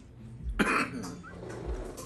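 A person coughing once, about half a second in.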